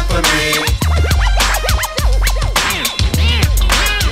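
Hip hop beat with deep bass and regular drum hits, overlaid with DJ turntable scratching: many quick sweeps rising and falling in pitch.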